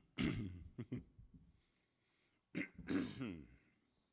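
A man clearing his throat twice, once at the start and again about two and a half seconds in.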